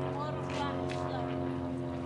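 Boat engine idling: a steady, even drone that holds one pitch throughout.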